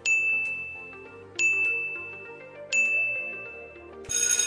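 Quiz countdown timer sound effect: three bright, high dings a little over a second apart, each ringing and fading away, over faint background music.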